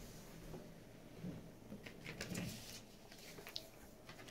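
Faint scattered taps and light rustles as small plastic bottle-shaped lip balms are handled and set down on a wooden table.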